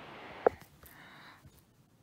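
Handling noise: a soft rustling hiss for about a second and a half, with one sharp tap about half a second in and a few faint ticks after it.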